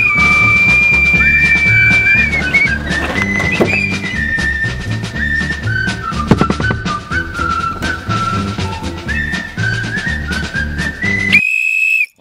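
A police whistle blown in a long, steady, high blast for about the first two seconds, over upbeat background music with a beat that carries on afterwards. Near the end the music cuts off suddenly and the whistle sounds again on its own.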